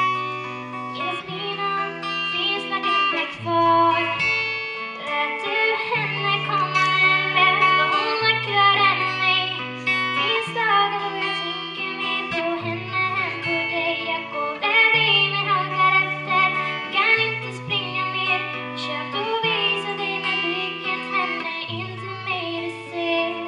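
A girl singing while strumming an acoustic guitar, the chords changing every second or two.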